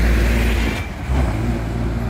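Road traffic passing close by: vehicle engine and tyre noise with a low rumble, loudest in the first second.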